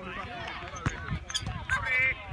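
Voices of players and onlookers calling across a football pitch, with a few sharp thuds of the ball being kicked and a high shout near the end.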